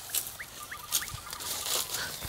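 Faint outdoor birdsong: three short rising chirps in the first second, then a brief rapid trill, with light rustling of leaf litter underfoot.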